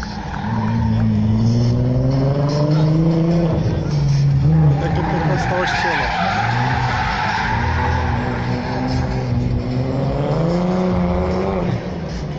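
A car's engine revving in long rising sweeps, one from about half a second in and another near the end, with a stretch of tyre squeal and skidding in between as the car performs on the track.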